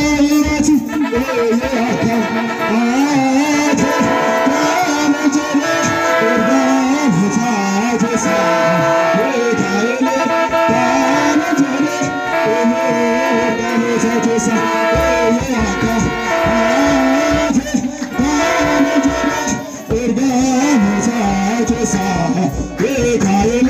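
Ethiopian Orthodox wereb (waraabii) hymn chanted by a group of male voices in Afaan Oromo, with long held notes stepping up and down in pitch over the beat of a kebero drum.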